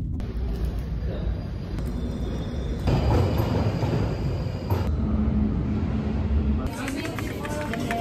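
Short stretches of ambient sound joined by hard cuts. Car road noise comes first. A London Underground train then rumbles past a platform in the middle, with a faint steady high whine above the rumble. Voices from a busy shop follow near the end.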